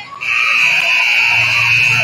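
Gym scoreboard horn sounding one loud, steady blast lasting nearly two seconds.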